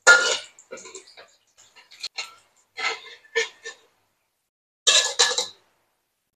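Metal spatula scraping and knocking against a steel wok as it turns a block of terasi (shrimp paste) frying in a little oil. It comes in several short strokes, the loudest right at the start and again around five seconds in.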